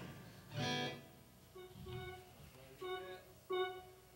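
Guitar plucked in a handful of separate single notes, each ringing briefly with pauses between, the first and loudest about half a second in. It sounds like a check of tuning or tone before the song.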